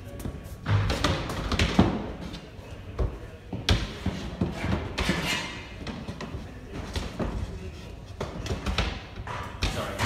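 Irregular knocks and thuds as a shelf is fitted into the folding frame of a pop-up display counter, with a cluster in the first two seconds and more scattered through.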